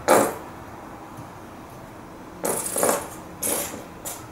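A metal painting knife working acrylic paint on a palette plate: one short sharp knock right at the start, then two brief scrapes in the second half.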